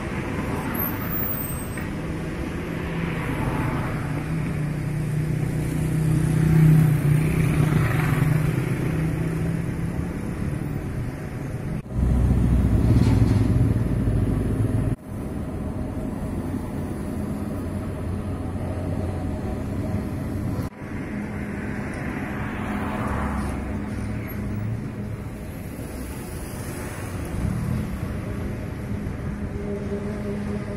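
Engines running with road-traffic noise and a steady low hum. The sound swells about six seconds in and changes abruptly three times, around 12, 15 and 21 seconds in.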